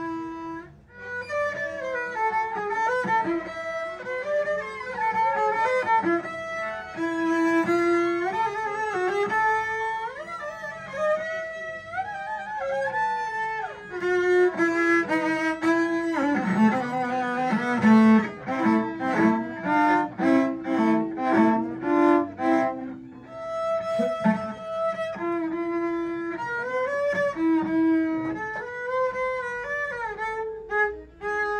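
Solo cello played with the bow: a flowing melodic passage, with a stretch of short, strongly accented strokes about two a second in the middle and a brief break before a slower line resumes.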